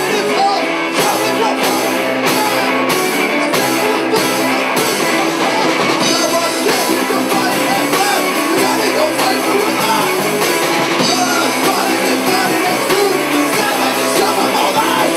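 Live rock band playing: electric guitars, bass and drum kit with a singer at the microphone. Sharp drum hits stand out about twice a second for the first five seconds, after which the sound grows fuller and denser.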